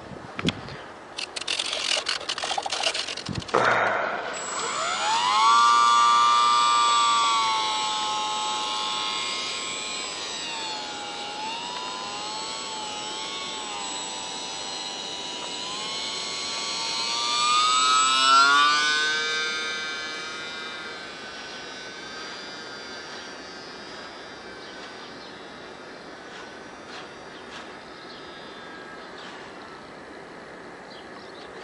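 Brushless electric motor and propeller of a micro RC J-3 Cub on skis: after a few seconds of scratchy noise, the motor whine comes up about four seconds in as it throttles up for takeoff from snow. It holds a fairly steady pitch, swells and rises in pitch around the middle as the plane passes close, then fades as it flies away.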